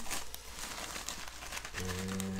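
A plastic poly mailer being torn open by hand, its plastic and the bubble wrap inside crinkling, with a few small clicks. A low steady hum starts near the end.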